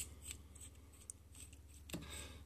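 Faint metal clicks and ticks from a Merkur 180 three-piece safety razor being handled as its knurled handle is unscrewed from the head, with one sharper click at the very start.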